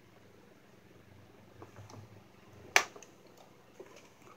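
Light plastic clicks from a toy fire truck's cab door and parts being worked by hand. One sharp click about two-thirds of the way in is the loudest.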